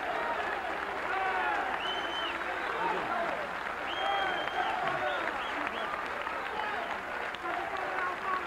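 Audience applauding, with many voices calling out over the clapping.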